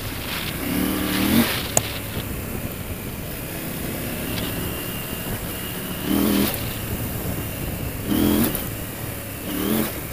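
KTM 890 Adventure R's parallel-twin engine running along at low road speed, with four short throttle openings: about a second in, around six seconds, around eight seconds and just before the end.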